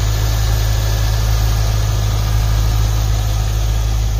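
Stock 5.7-litre V8 of a 2002 Chevrolet Corvette C5 idling steadily with the hood open: a low, even hum, nice and quiet.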